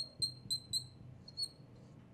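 Marker squeaking on a glass lightboard as it writes: a quick run of short, high squeaks in the first second, then a couple more about halfway through.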